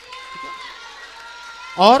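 A man's amplified voice preaching in Hindi through a microphone: a pause of more than a second in which only a few faint steady tones are heard, then he speaks again loudly near the end.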